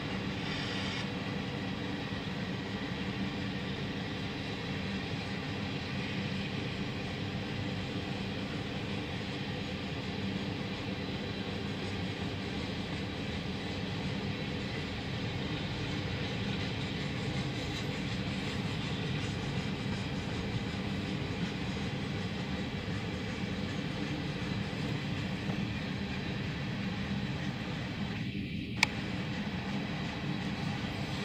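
Freight train's cars rolling past over the rails in a steady, continuous low rumble. A single sharp click comes near the end.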